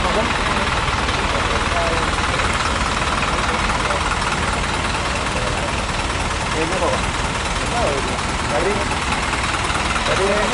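Isuzu Giga truck's diesel engine idling steadily, with faint voices over it.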